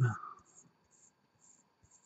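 Very faint, light scratching ticks of metal threads as a mechanical mod's extension tube is screwed onto the main tube.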